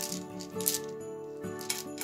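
Small river stones clacking together as they are tipped out of a cloth pouch: two sharp clicks about a second apart, over steady background music.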